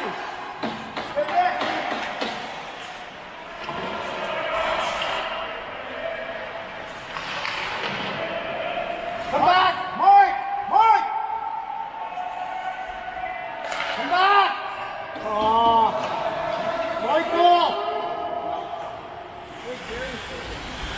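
Ice hockey game sounds in a reverberant indoor rink: sharp knocks of sticks and puck against ice and boards, with players shouting short calls several times in the second half.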